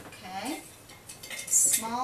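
Wooden paintbrush handles clinking and rattling against each other in a container as a small flat brush is picked out. There is a sharp clatter about one and a half seconds in, a short hum near the start, and speech starting near the end.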